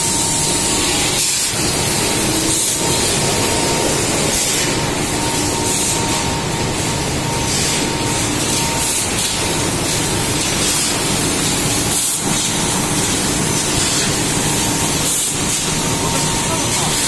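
Industrial machinery running continuously with a loud, steady hiss and a faint steady whine.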